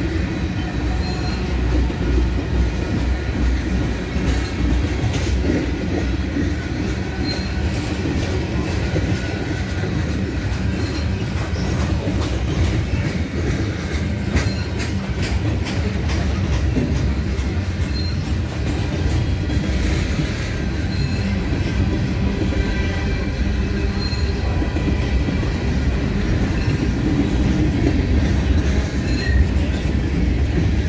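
Freight cars of a long, slow-moving freight train rolling past close by: a steady rumble of steel wheels on rail, with scattered clicks as wheels cross rail joints and brief faint high wheel squeals.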